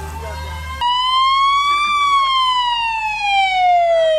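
Emergency vehicle siren in a slow wail. It becomes loud about a second in, rises in pitch for a second, then falls slowly for the rest of the time.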